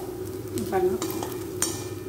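Metal spatula stirring and scraping colocasia (taro root) fry around a stainless steel kadai, with a light frying sizzle and a sharp scrape about a second and a half in.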